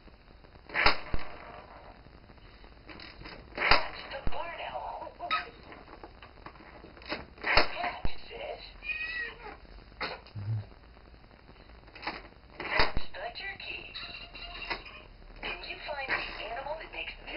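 A baby slapping a hard plastic electronic toy: several sharp slaps a few seconds apart, with short high, wavering squeals between them.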